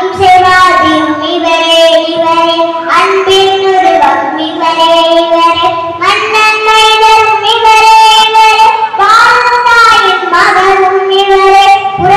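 A second-standard schoolgirl singing solo into a microphone, without accompaniment, in long held notes that slide from one pitch to the next.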